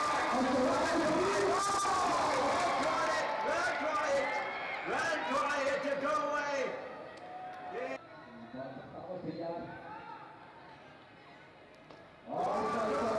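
Several people's voices talking and calling out, overlapping, loud for about the first seven seconds and then fainter.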